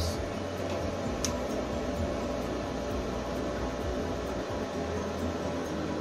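Steady hum from two Felicity low-frequency inverters idling with no load on them, their transformers energised. A single sharp click about a second in.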